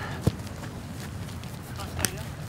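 Footsteps running on grass, with a single sharp thud about a quarter of a second in and faint voices in the background.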